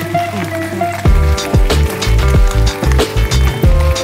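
Music with a heavy, regular beat that kicks in about a second in, played loud from a Bluetooth speaker on an e-bike.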